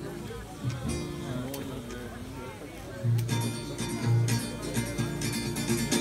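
Seven-string acoustic guitar: quiet playing at first, then about three seconds in, louder rhythmic strumming of a song's introduction.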